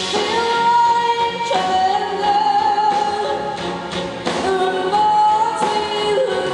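Live rock band playing together with a string orchestra, a voice singing long held notes over the band.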